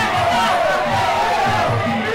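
Traditional Muay Thai fight music (sarama): a wavering reed-pipe melody over a steady drum beat, with crowd shouting mixed in.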